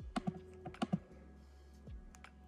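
Typing on a laptop keyboard: a quick run of keystrokes in the first second, then it stops, leaving a low steady hum.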